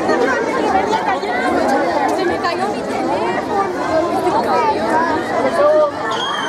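A crowd chattering, many voices talking over one another at once.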